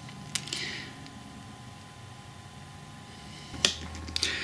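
Light clicks and a brief scrape of a small wooden jig being handled on a cutting mat: one click about a third of a second in, a short scrape just after, and a sharper click near the end, over a faint steady hum.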